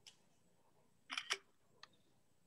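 Quiet room tone on a video-call line, with two sharp clicks in quick succession a little after a second in and a fainter click near the end.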